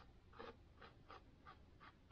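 Faint, quick strokes of an oil-paint brush on canvas, about three a second.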